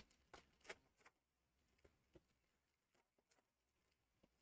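Near silence, with a few faint, brief clicks and rustles from trading card packs being handled, most of them in the first couple of seconds.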